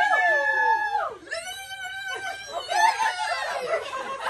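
High-pitched squeals and laughter from a group of women: a long held squeal in the first second, then more high squealing laughter.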